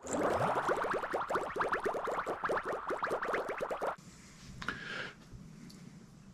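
Logo-animation sound effect: a quick run of bright ticking notes, about ten a second, lasting about four seconds and stopping abruptly, then low quiet with one faint soft sound near the end.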